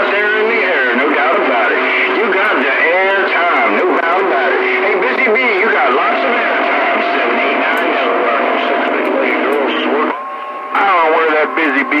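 Speech received over a CB radio's speaker: distant stations talking over one another, thin and garbled, with steady whistle tones under the voices. A little after ten seconds the voices drop out briefly, leaving a single steady tone, then they come back.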